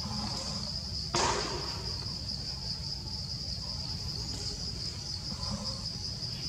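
Insects keep up a steady, high-pitched, slightly pulsing trill. About a second in, a short sharp burst of noise cuts in and fades quickly.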